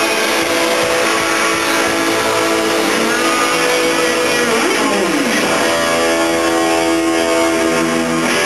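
Live rock band's distorted electric guitars holding loud sustained chords, with one note bending down and back up about five seconds in.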